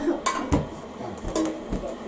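Kitchen clatter: several short clinks and knocks of dishes or glass jars being handled, with a duller thump about half a second in.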